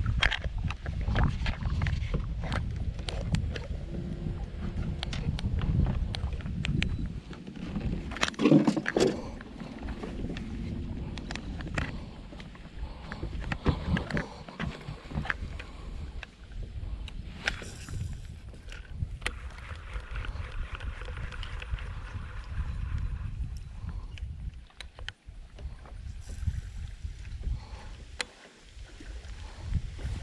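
Wind rumbling on the microphone over water lapping at a small boat, with scattered clicks and knocks from handling a spincast fishing rod and reel.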